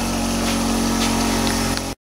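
A motor-driven machine runs with a steady, even-pitched hum, then cuts off abruptly near the end.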